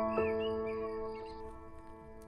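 Soft background music of held keyboard notes, one struck just after the start and fading away toward the end, with a bird chirping over it during the first second.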